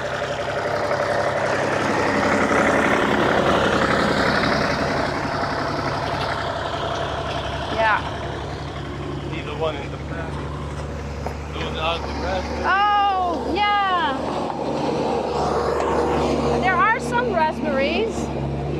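A motor vehicle's engine running close by, a steady low hum with noise that swells over the first few seconds. Short voice-like calls come in about twelve seconds in and again near the end.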